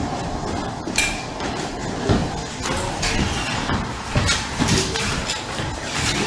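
Irregular knocks and thumps, a few of them every second or so, with a sharp click about a second in.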